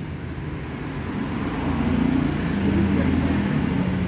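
Low rumble of a vehicle engine over a steady low hum, growing louder in the second half.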